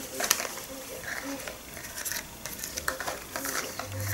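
Light handling noises: soft rustles and small scattered taps and clicks as silicone baking moulds are picked up and shuffled, with a sharper click about a third of a second in.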